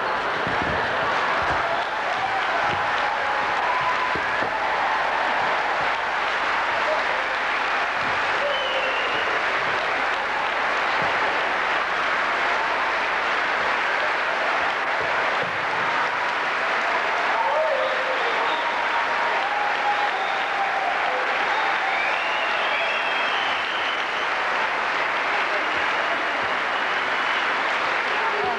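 Audience applauding steadily, with voices calling out over it.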